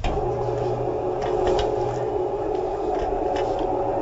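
A steady, even hum of several tones that starts abruptly and holds flat, with a few faint clicks over it.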